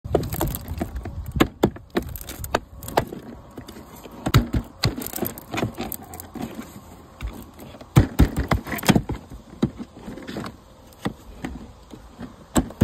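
Vinyl siding being unlocked with a hooked siding removal tool: irregular plastic clicks, snaps and scrapes as the panel's lap is pulled loose.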